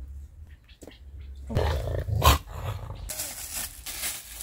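A dog growls loudly for about a second, starting about a second and a half in. Near the end, thin plastic food-prep gloves crinkle as they are pulled on.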